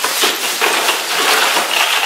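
Ice cubes being dumped from a plastic bag into a plastic ice chest: a continuous clatter of many cubes clinking and knocking against each other and the chest's liner.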